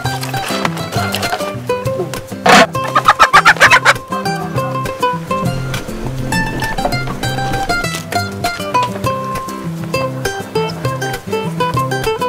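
Background music with plucked-string notes. About two and a half seconds in, a hen squawks loudly in a quick run of short cries as she is caught.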